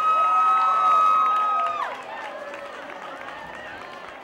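Live audience cheering and whooping. One high voice holds a long cry for nearly two seconds, then glides down and drops out, leaving quieter crowd cheering and chatter.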